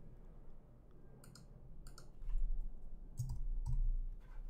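A few separate, fairly quiet computer keyboard keystrokes, starting about a second in.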